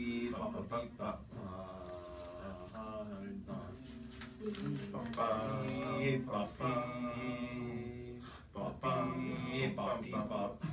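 A small group of voices singing a cappella, holding pitched notes with short breaks between phrases, with no piano.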